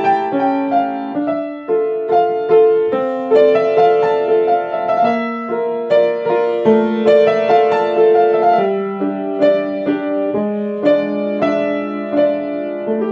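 Piano played with both hands: a slow melody of held notes over sustained chords in the middle range, each note starting crisply and ringing on.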